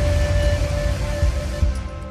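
Cinematic logo sting: a deep rumbling boom under a rushing, noisy swell and a held tone, slowly fading.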